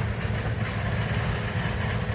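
Steady low rumble of an engine running at idle.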